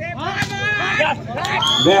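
A volleyball is spiked at the net with a sharp smack about half a second in, amid many voices shouting from the crowd and players.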